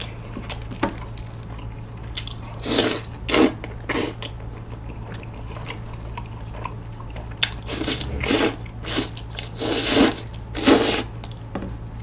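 Close-up mouth sounds of someone slurping and chewing saucy tteokbokki noodles. The sounds come as short bursts: two about three and four seconds in, then a cluster from about eight to eleven seconds.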